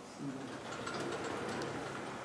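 Sliding blackboard panels being moved up and down on their runners: a continuous mechanical rattling rumble from the board's pulley and counterweight mechanism, with a few light clicks.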